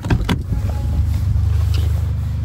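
Two sharp knocks of the camera being handled, followed by a steady low rumble.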